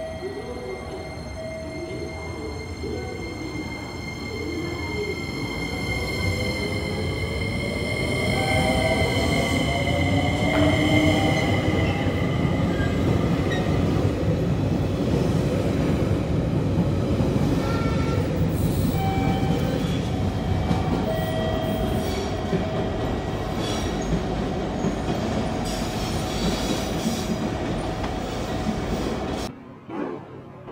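A JR Kyushu 885 series electric express train pulling away from the platform. Its motor whine climbs in pitch as it gathers speed, over a rumble that grows louder as the cars roll past close by. High steady tones fade out around the middle, and the sound cuts off suddenly just before the end.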